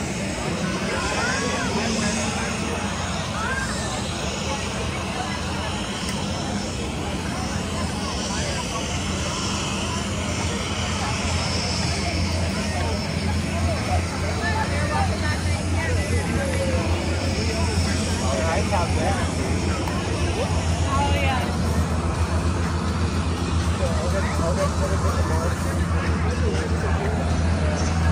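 Crowd chatter over a steady low engine drone that grows louder through the second half.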